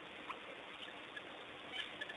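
Waterhole ambience: a steady faint hiss with a few short, faint chirps scattered through it, the loudest near the end.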